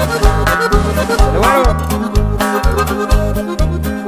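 Norteño band music in an instrumental break: a button accordion plays the melody over a steady bass beat about twice a second.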